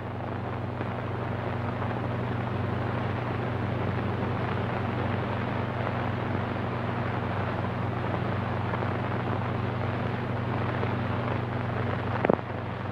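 A steady rumbling noise from the old film's soundtrack, with a low hum under it, swelling slightly in the first second and then holding even.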